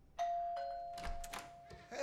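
Two-tone doorbell chime: a higher note rings out about a fifth of a second in, then a lower note about half a second in, and both ring on together for over a second. A few short clicks sound during the ringing.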